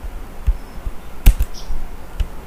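A few isolated clicks at a computer keyboard, one sharper and louder a little past halfway.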